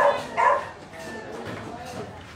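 A dog barking twice in quick succession, two short sharp yaps about half a second apart, followed by quieter background chatter.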